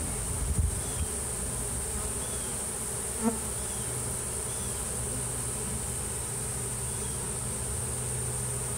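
Steady hum of a large honeybee swarm as the mass of bees crawls up a wooden ramp into a hive entrance.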